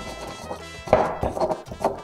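Stone pestle grinding and knocking garlic, a serrano chile and salt in a volcanic-stone molcajete: a run of scrapes and knocks starting about a second in, over background music.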